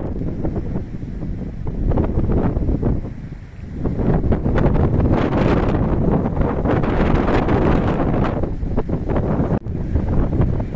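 Wind buffeting the camera's microphone in strong, uneven gusts, with a brief lull about three and a half seconds in.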